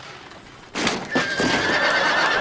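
A short, sharp noisy burst about three-quarters of a second in, then a horse neighing in a long, wavering high call.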